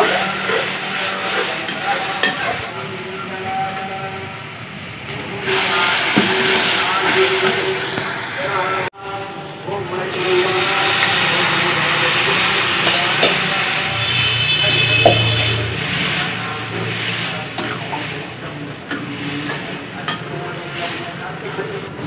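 Metal spoon stirring and scraping masala as it fries and sizzles in a steel pan over a wood fire. After a break about nine seconds in, water is poured into the hot pan and the spoon keeps stirring the bubbling gravy.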